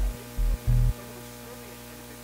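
Deep, pulsing bass tones from a keyboard synthesizer that cut off about a second in, leaving a steady electrical mains hum with faint gliding tones above it.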